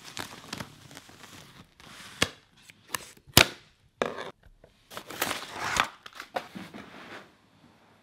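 Plastic wrapping on a rolled area rug being cut with scissors and pulled away: crinkling and tearing in irregular bursts, with a few sharp snaps, the loudest about three and a half seconds in.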